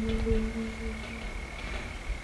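A singer's held note at the end of a sung line, trailing off about a second in, then a quiet pause in the song. A faint, steady high-pitched tone sounds throughout.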